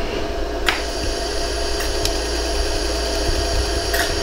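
Steady hum of a LaserStar jewelry laser welder with a few sharp clicks, one clear one about a second in and another near the end, as laser pulses fill a pinhole in a hollow gold earring.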